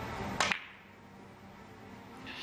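Sharp click of a cue tip striking the cue ball in three-cushion carom billiards, followed about a tenth of a second later by a second click as the cue ball hits the next ball.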